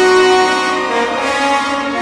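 Orchestral music from a violin concerto: several sustained notes held together, the harmony shifting a couple of times.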